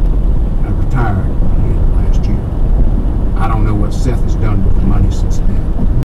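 Steady low road and engine rumble of a car driving at highway speed, heard from inside the cabin, with a voice speaking in snatches over it.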